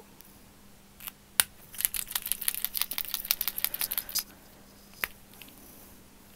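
Derwent paint pen being shaken: its mixing ball rattles inside the barrel in a quick run of clicks lasting about two and a half seconds, mixing the paint before first use. A couple of single clicks come just before the run, and one sharp click follows about five seconds in.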